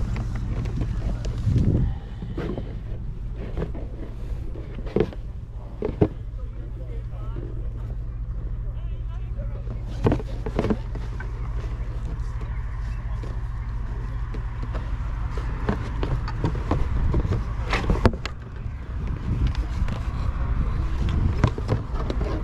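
Outdoor market ambience: a steady low hum and background chatter, with a few sharp knocks and rustles as a cardboard shoebox and football boots are handled close to the microphone.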